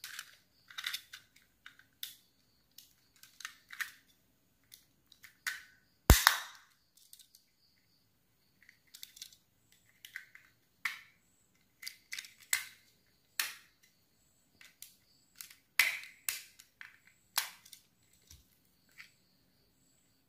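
Plastic clicks, snaps and short scrapes from a quartz clock movement's case being pried open with a flat metal tool, scattered and irregular, with one loud sharp snap about six seconds in.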